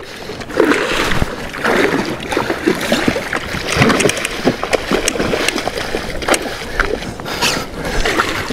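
A hooked fish thrashing at the surface beside a kayak, water splashing and sloshing irregularly, with scattered knocks and clicks.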